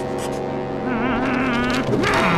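A cartoon character whimpers in a wavering voice from about a second in, over a steady, sombre low musical drone.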